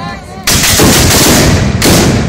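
A volley of black-powder muskets fired with blanks by a company of marchers: a sudden, very loud ragged burst of shots about half a second in that rolls on for over a second, then another loud shot near the end.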